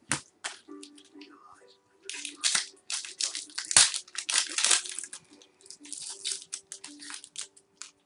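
A trading-card pack wrapper being torn open and crinkled by hand: a sharp snap at the start, then bursts of tearing and crackling, loudest about four seconds in.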